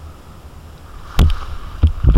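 Wind rumbling on an action camera's microphone, broken by a loud burst of noise about a second in and another near the end.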